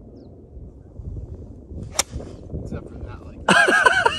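A golf club striking a ball off the grass: one sharp click about two seconds in. Near the end a person lets out a loud, wavering vocal cry, the loudest sound here.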